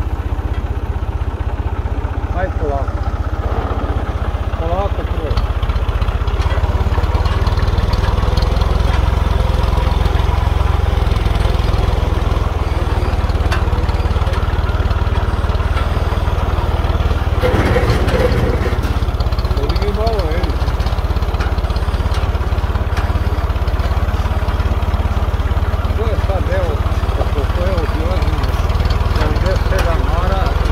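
Small tractor's engine running steadily as it drives, a constant low rumble, with voices faintly talking over it at times.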